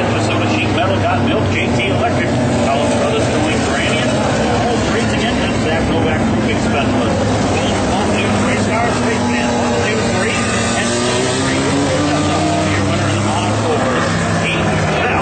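Four-cylinder dirt-track race cars running laps, a steady blend of engines with pitch slowly rising and falling. Indistinct voices run underneath.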